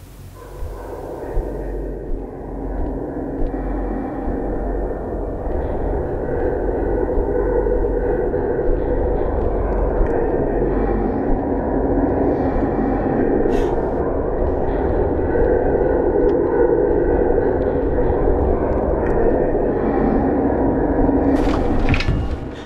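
Dense, rumbling horror-film drone that swells up over the first few seconds, holds loud and steady, and cuts off suddenly at the end.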